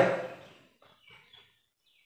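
A man's voice trailing off at the end of a phrase, then near silence in a small room with a few faint, short high chirps.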